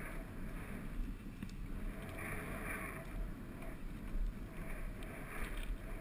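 Wind rumbling on the camera's microphone, with patches of soft hiss coming and going.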